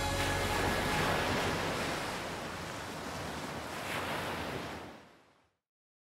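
Ocean waves washing, a steady rushing noise that swells twice and then fades out to silence about five seconds in.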